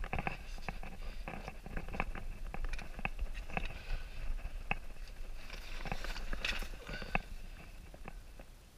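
Footsteps and scrapes of a caver scrambling over loose, broken basalt rubble on a lava-tube floor: an irregular run of crunches and sharp knocks of rock, one every half second or so.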